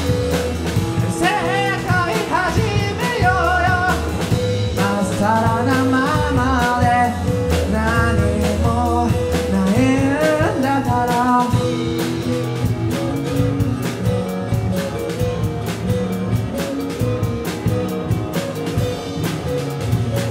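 Live rock band of bass, drum kit, electric guitar and acoustic-electric guitar playing a song, with a male lead vocal singing over it. The singing stops a little over halfway through and the band carries on instrumentally.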